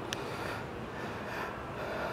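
Steady, even hiss of room background noise, with one faint click just after the start.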